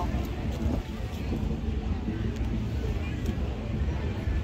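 Open-air market ambience: a steady low rumble of wind on the microphone, with faint distant voices and a few light ticks.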